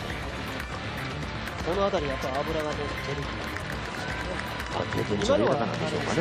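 Speech in short phrases over background music, with outdoor street ambience.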